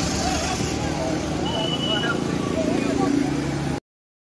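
People's voices calling out over a steady rumbling noise, with a brief high steady tone about one and a half seconds in; everything cuts off abruptly near the end.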